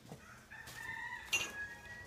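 A rooster crowing once, one long call of about a second and a half, with a short click partway through.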